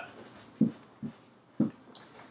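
A dog whimpering: three short whimpers about half a second apart.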